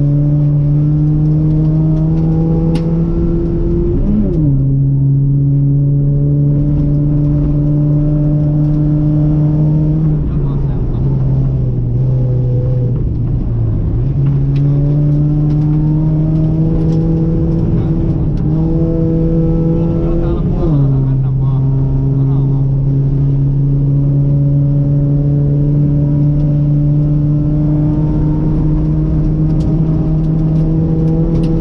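Ford Puma rally car's engine heard from inside the cabin, pulling hard with the pitch climbing slowly. There is a quick upshift about four seconds in and another about twenty seconds in, and a lift with the revs sagging and picking back up between about ten and fourteen seconds.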